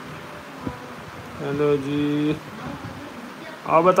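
A man's voice holding one steady hummed note for about a second, dipping slightly in pitch partway through, before he starts speaking near the end.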